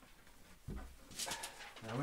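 A man's soft, close-miked murmur and breathing, with a breathy rustle about a second in.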